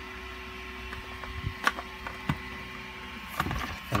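A 3D printer's stepper motors humming a steady tone that stops near the end. A few sharp clicks of hard 3D-printed plastic parts knocking together as they are handled.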